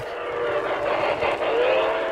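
Model steam locomotive's onboard digital sound system playing a recorded steam whistle: a breathy whistle with a steady tone that glides up and settles near the end.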